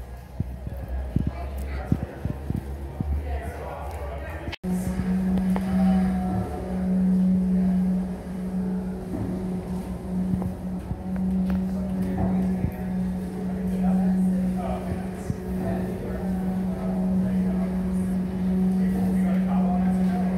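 Cabin noise inside a moving aerial tram car. A low rumble with scattered knocks gives way, after a sudden break about four to five seconds in, to a strong steady low hum, with faint voices of other passengers.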